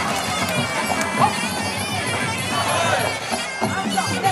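Sarama, the traditional music played live during Muay Thai bouts: a reedy, bagpipe-like pi java oboe playing a wavering, gliding melody.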